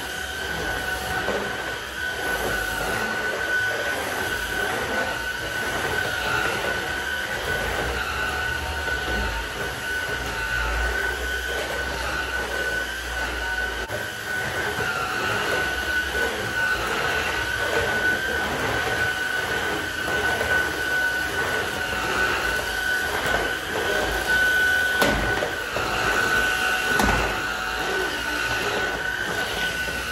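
Cordless stick vacuum cleaner running steadily over a tile floor, its motor giving a constant high whine, with a couple of short knocks near the end.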